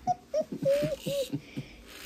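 Laughter in a string of short, high-pitched giggles broken by brief gaps.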